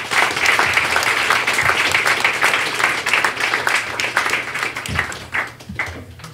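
Audience applauding, a dense patter of many hands clapping that thins out to a few scattered claps near the end.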